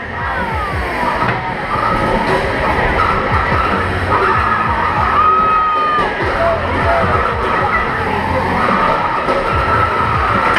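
Crowd din with music, over which the combat robots' electric drive motors whine and squeal as they push against each other, the pitch sliding down once near the start and holding steady for a moment around the middle.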